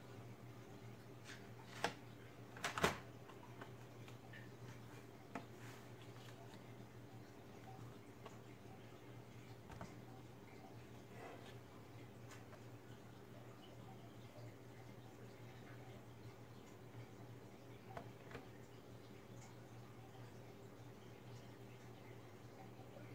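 Plastic bottom cover of a Lenovo G50 laptop being pressed back onto the case: a sharp click about two seconds in and a louder cluster of clicks about a second later as it snaps into place, then a few faint taps over a steady low hum.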